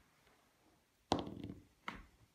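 Dice thrown onto a fabric gaming mat: a knock about a second in, a short clatter as they tumble, then one more click near the end.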